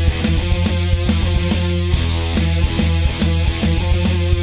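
A rock band playing live and loud: electric guitar over a full drum kit, with a heavy low end and a steady driving beat.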